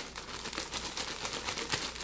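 Clear plastic zip-top bag crinkling and crackling in the hands as chopped onion is emptied from it into a glass blender jar, a dense run of small crackles.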